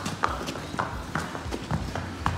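Hooves of a pony walking on a hard stable floor: a steady clip-clop of hoofbeats, about three a second, as the pony is led at a walk.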